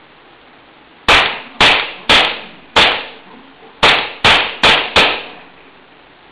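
Glock-style pistol fired eight times, each shot a sharp crack with a short echo in the room. Four shots come about half a second apart, then after a pause of about a second four quicker shots follow.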